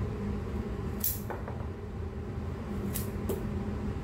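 Steel bonsai scissors snipping through thick adenium roots: one sharp snip about a second in and two more close together near the end, over a steady low hum.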